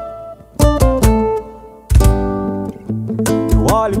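Acoustic guitars and a cajón playing a song's instrumental break. Two chords are struck, about half a second and two seconds in, and left to ring. Near the end the rhythm picks up again and a voice begins to sing.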